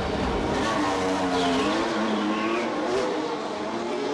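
A 2021 Formula One car's 1.6-litre turbocharged V6 hybrid engine running at low speed, its note rising and falling gently, with a high whine dropping in pitch about halfway through.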